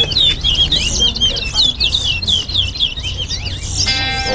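Caged towa-towa (chestnut-bellied seed finch) singing a fast, unbroken string of high chirping notes during a singing race.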